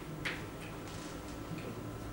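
Chalk tapping and scratching on a blackboard in a few short, sharp strokes, over a steady low room hum.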